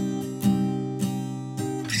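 Acoustic guitar strumming chords, a strum about every half second with the chord ringing on between strums.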